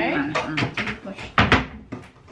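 A few sharp knocks and clatter from kitchen work, the loudest about one and a half seconds in, with a woman talking briefly.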